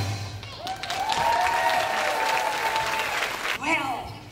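Audience applauding at the end of a song, starting about half a second in, with a voice calling out over the clapping and a few spoken words near the end.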